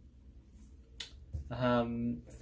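Quiet room with a low steady hum. A single sharp click comes about a second in, then a short closed-mouth hum ('mm') from the vlogger near the end.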